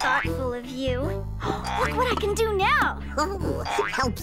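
Cartoon soundtrack: light background music under a character's voice, with several swooping rises and falls in pitch.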